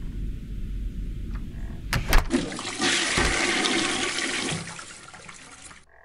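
Toilet flushing: a couple of sharp clicks about two seconds in, then rushing water that swells and slowly dies away, cut off suddenly near the end.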